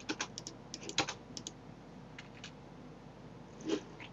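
Light computer keyboard keystrokes and mouse clicks: a scattered handful of short clicks, most of them in the first second and a half, with a few more later.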